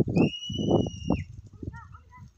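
A flock of sheep running over sandy ground: hoofbeats and scuffling in several rough, noisy bursts. A single high, steady whistle starts about a quarter second in and lasts about a second.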